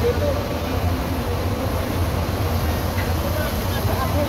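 A Scania tour coach's diesel engine idling with a steady low rumble, with scattered voices over it.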